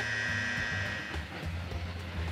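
A Makita electric buffer running steadily on a foam finishing pad during the final glaze-polishing step, under background music.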